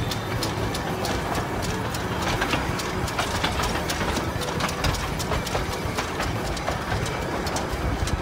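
Darjeeling Himalayan Railway steam locomotive running along the street track, heard close by from the moving train: a steady low rumble with a dense, irregular clatter of clicks and rattles from the wheels and running gear.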